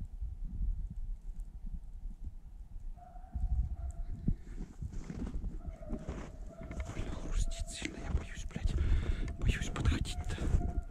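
Footsteps crunching through snow, in quick uneven steps that grow denser in the second half, over a low wind rumble on the microphone. A thin steady tone comes in about three seconds in and keeps on with short breaks.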